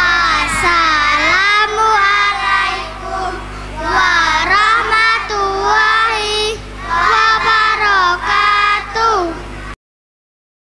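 A group of young children singing in unison through a microphone and PA, in phrases of a few seconds, over a steady low hum. The sound cuts off abruptly near the end.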